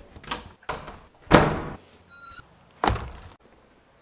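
A series of door clunks and thuds, a door being handled and shut, the loudest thud about a second and a half in and another near three seconds. A brief high chirp sounds between them, about two seconds in.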